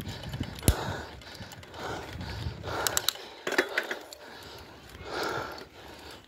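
Bicycle in motion heard through a phone mounted on the bike: faint rattling and scattered sharp clicks, one loud click under a second in and a quick cluster around the middle, with a few soft rushes of air.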